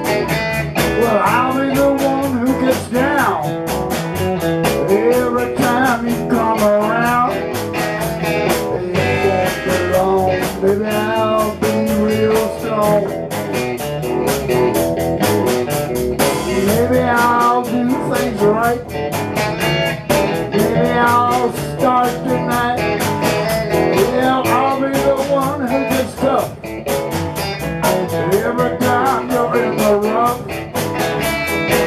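Live blues-rock band playing an instrumental passage on electric guitars and drum kit, with a lead guitar line bending notes up and down in pitch.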